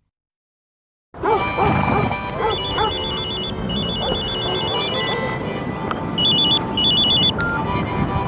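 About a second of dead silence, then background music under which a mobile phone rings: a rapid, high electronic trill in several trains of pulses, two long ones and then two short ones near the end.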